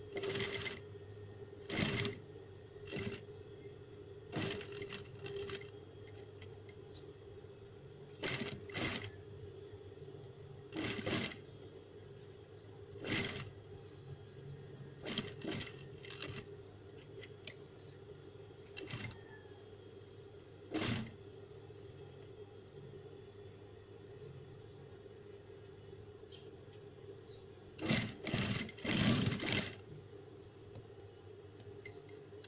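Industrial sewing machine stitching in short bursts every second or two over a steady motor hum, with a pause in the later part and a longer, louder run near the end.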